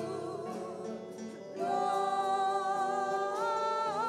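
A woman singing a slow gospel song with keyboard accompaniment. About a second and a half in, the music swells into a long held note.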